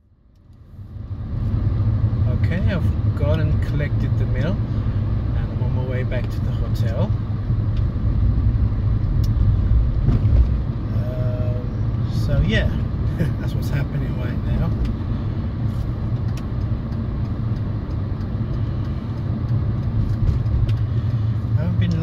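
Car interior noise while driving: a steady, low engine and road drone heard from inside the cabin, fading in over the first second or so.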